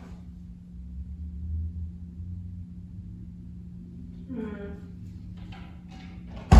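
Quiet room with a steady low hum and a low rumble early on. About four seconds in there is a brief, distant woman's voice sound.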